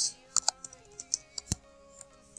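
Computer keyboard typing: about eight quick, irregular keystrokes, the sharpest about one and a half seconds in, over faint steady background music.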